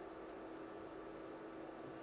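Room tone: a faint, steady hiss with a low, steady hum.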